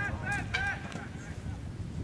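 Men shouting encouragement, a few short high-pitched yells in the first second, over a steady low outdoor rumble.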